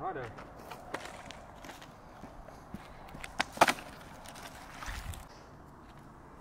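A few short, sharp knocks over a quiet outdoor background. The loudest come as a close pair about three and a half seconds in.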